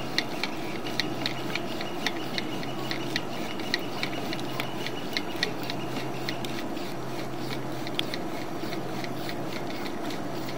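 Sewer inspection camera's push cable being reeled back out of the pipe: a steady run of light ticks about three a second, with rubbing over a low steady hum.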